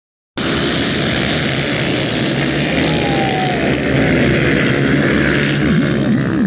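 A pack of 230cc-class dirt bikes revving hard and pulling away together off a motocross start line, a dense mix of many engines at once. Near the end, single engines can be heard rising and falling in pitch.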